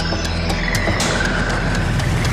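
Electronic theme music of the programme's closing titles, with a fast-pulsing low buzz and a high tone that slides down and then holds.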